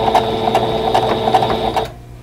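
Electric sewing machine running briefly in reverse to backstitch the start of a seam: a steady motor whine with rapid needle clicks, stopping just before the end.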